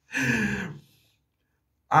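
A man's short breathy laugh, under a second long.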